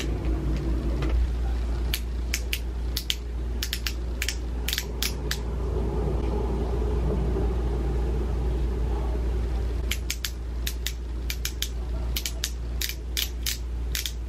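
Teeth-whitening gel pen's twist-up base clicking as it is turned to push gel onto the brush: runs of small clicks, about three a second, in two stretches, a couple of seconds in and again near the end, over a steady low hum.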